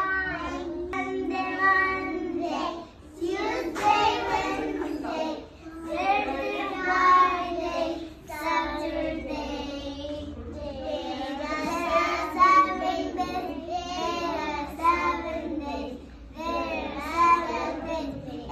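Young children singing a song together.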